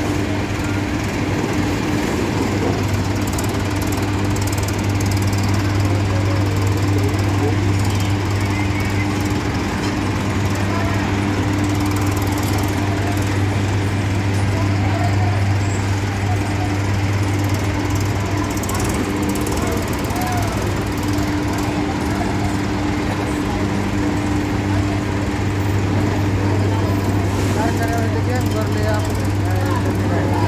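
Sugar-mill machinery at the cane unloading yard running with a steady, even hum and rumble, over a continuous background of voices.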